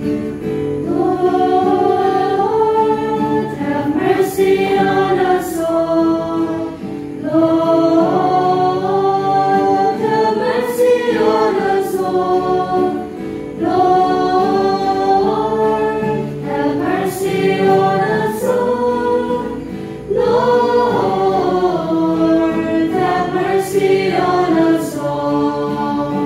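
Church choir singing a liturgical hymn in phrases of about three seconds each, over a steady sustained accompaniment.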